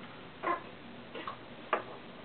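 Wooden toy blocks knocking and clicking against each other and the wooden tabletop as they are handled and stacked: three short separate knocks, the last a sharper click.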